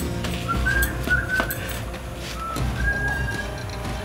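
Background music: a few short, high whistle-like notes, the last one held longest, over a low steady bed of sound.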